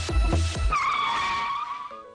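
An electronic dance beat that stops under a second in, then a single drawn-out car tyre screech, as in a hard skid, that wavers and fades over about a second.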